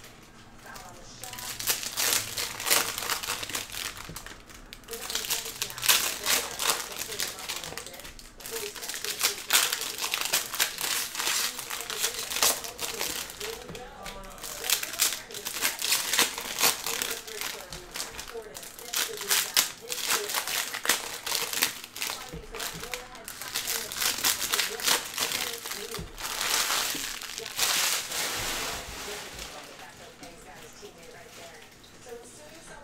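Plastic wrappers of Bowman baseball jumbo card packs crinkling and tearing as packs are ripped open and the cards pulled out. The crackling comes in bursts of a few seconds with short pauses between packs.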